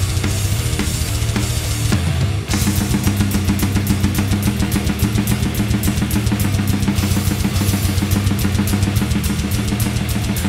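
Heavy metal drumming on a Tama Starclassic Bubinga drum kit with Sabian cymbals, played along with the song's guitar and bass. About two and a half seconds in, the part changes to a rapid, even beat.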